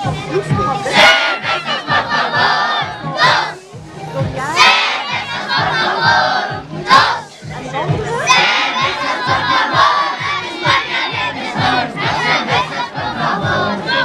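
A large group of children shouting and cheering together in repeated loud surges, with short lulls between them.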